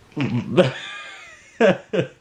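A man laughing: a few short bursts, then a long high-pitched squeal that slides downward, then more short bursts of laughter near the end.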